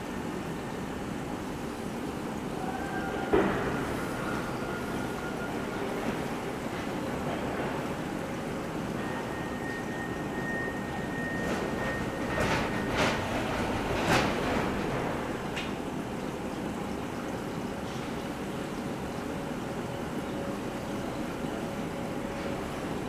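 Portable butane cassette stove's gas burner running with a steady hiss, with a sharp click about three seconds in and a few more clicks some ten seconds later.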